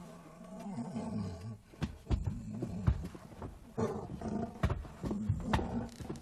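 Low roaring and growling that wavers in pitch, broken by several sharp knocks.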